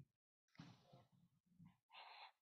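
Near silence: room tone, with only a few faint, indistinct low murmurs.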